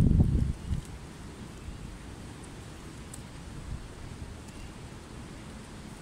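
Wind buffeting the microphone: a strong low gust in the first half-second, then a steady light rush of wind.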